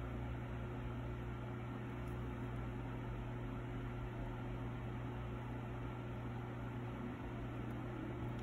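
Steady low hum over a faint even hiss, like a fan or other appliance running, unchanging throughout.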